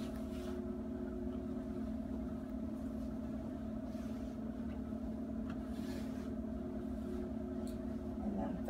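A steady low mechanical hum with a constant pitch, with a few faint rustles of cotton cloth being smoothed and folded.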